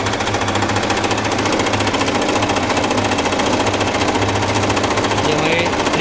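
Singer 8280 electric sewing machine running steadily at speed, its needle mechanism ticking rapidly and evenly as it stitches through fabric.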